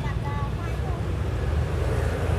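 Low, uneven rumble, with faint voices in the background during the first second.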